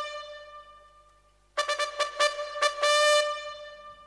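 Trumpet-like brass music: a held note fading out, a short silence, then a quick run of repeated notes on one pitch ending in another held note that fades.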